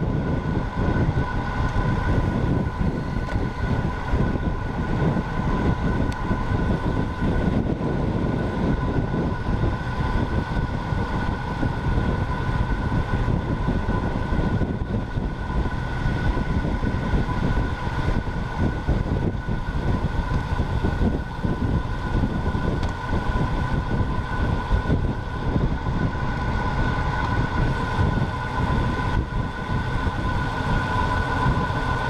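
Wind buffeting the microphone of a camera on a road bike moving at racing speed, with a steady high two-note whine running throughout.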